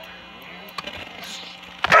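Quiet background music, then near the end a sudden loud thud: a wrestler's leg drop landing on the backyard ring.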